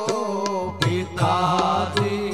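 A man sings a devotional Ram katha verse in a slow, wavering melody, accompanied by tabla strokes. A low sustained note joins about half a second in.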